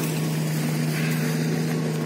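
A car engine idling, a steady low hum that holds an even pitch.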